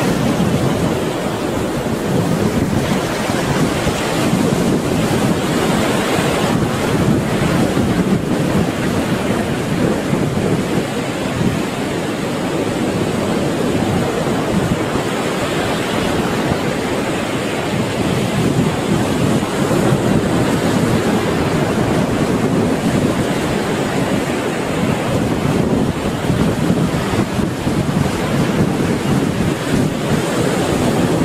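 Sea surf: waves breaking in a steady rush of noise that swells and eases slightly.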